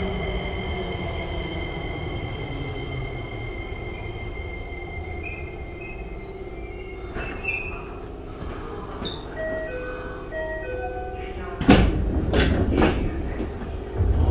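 Tokyo Metro 7000 series train with Hitachi IGBT-VVVF control coming to a stop, its steady inverter tone fading out in the first few seconds. A short chime melody of stepped notes plays midway, and near the end the doors open with a sudden loud burst followed by two more sharp sounds.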